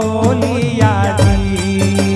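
Male voice singing a Gujarati devotional bhajan with instrumental and percussion accompaniment.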